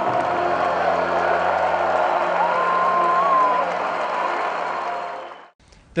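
Cheering and applause from the players and crowd over music, fading out about five and a half seconds in.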